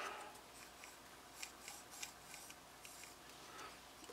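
Farid K2 titanium framelock folding knife's blade being slowly swung open: a faint gritty scraping with a few small ticks. It is the silicon nitride ceramic detent ball riding over the rough hot-rolled finish on the CPM-REX121 blade; it sounds gritty but is no fault.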